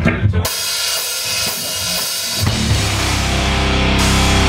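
Heavy metal band starting a song: the drum kit comes in first with crashing cymbals and kick drum, then electric guitars and bass join about two and a half seconds in and the music grows fuller and louder.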